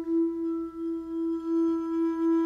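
Bowed vibraphone bar sustaining one long, steady note with a gently wavering loudness.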